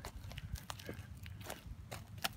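Footsteps on bark mulch, a few faint, irregular crunches and clicks.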